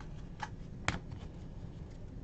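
Football trading cards being handled, slid against one another and flicked, giving a couple of short card clicks, the sharpest just under a second in.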